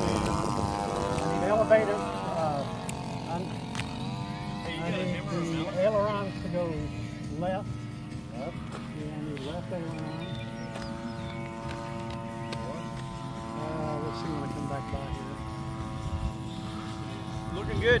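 DLE-35 single-cylinder two-stroke gas engine of a radio-controlled Aichi D3A 'Val' scale model droning in flight. Its pitch falls in the first second or so as it passes, then holds steady.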